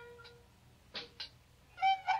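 A quiet passage in a band's recording: a held instrument note fades out, then two short squeaky notes sound about a second in. Near the end the playing comes back in loud, with high, wavering pitched notes.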